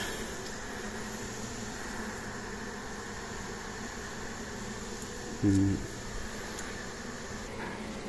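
Steady buzzing of a honey bee colony around an open hive box, an even hum.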